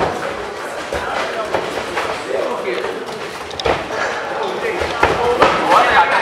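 Unclear voices calling out in a large room, broken by several sharp thuds from grappling, the loudest nearly four seconds in.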